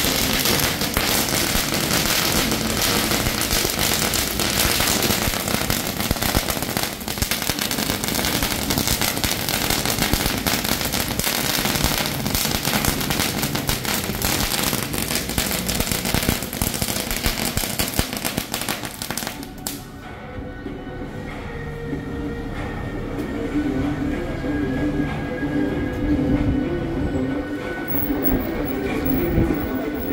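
A long string of firecrackers crackling in rapid, unbroken succession, cutting off suddenly about two-thirds of the way through. Quieter music and crowd sound follow.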